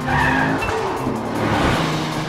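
Cartoon car sound effect: a car speeding past with a loud rushing noise that swells and fades, over background music.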